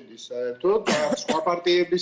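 Speech only: a man talking, with a brief harsher burst about a second in that may be a throat clear.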